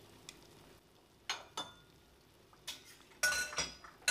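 Wooden chopsticks knocking and clinking against a stainless-steel pot of chicken curry as the chicken is poked and stirred: a few light, separate knocks, then a quick cluster of clinks with a slight metallic ring near the end.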